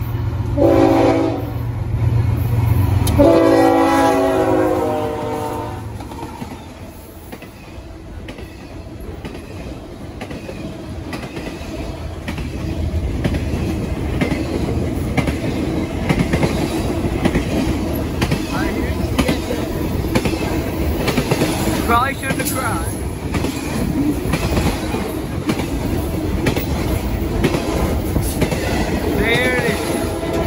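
Freight locomotive's multi-chime air horn sounds two blasts, a short one and then a longer one, over the rumble of its diesel engine as it passes. The intermodal container cars then roll by with a steady rumble and clickety-clack of wheels over rail joints.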